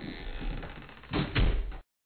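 Several dull thumps and knocks over muffled, phone-quality background noise, the loudest two a little after a second in; the sound then cuts off abruptly.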